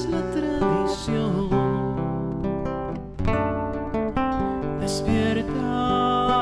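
Acoustic guitar played with strummed and picked chords under a man's singing voice in a slow trova ballad.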